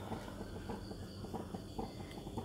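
Quiet background with a low steady hum and faint, scattered short sounds.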